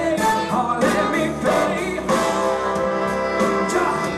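Live rock band playing at full volume: drums, bass, guitars and keyboards, with a lead melody line over them.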